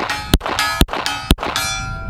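A semi-automatic pistol fired three times in quick succession, about half a second apart, with steel targets ringing with a metallic clang from the hits.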